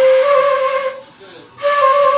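Concert flute playing two long held notes with audible breath hiss, the first fading about a second in and the second, a little higher, starting about half a second later.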